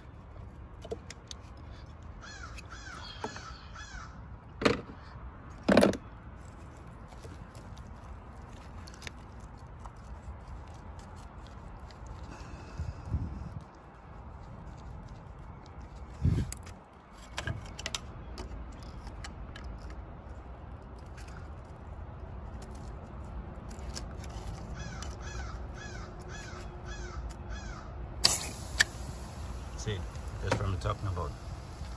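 Crows cawing in quick runs of calls a few seconds in and again near the end. Over them come a few sharp knocks and clacks of hand tools on the engine, the loudest two about five and six seconds in.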